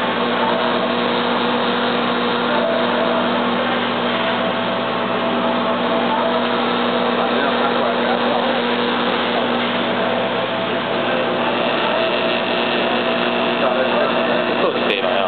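Automatic PCB lead-cutting machine running steadily, its high-speed blade spindle and conveyor drive making a continuous, even machine hum with several steady pitched tones.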